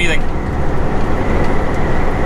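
Steady low drone of a semi-truck's diesel engine and road noise, heard inside the cab while driving.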